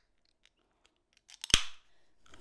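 Aluminium can of LaCroix sparkling water being opened: a few small ticks as the tab is worked, then one sharp pop about one and a half seconds in, with a short hiss of escaping carbonation.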